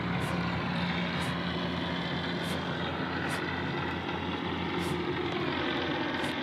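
An engine running steadily at a constant speed, its pitch dropping slightly near the end.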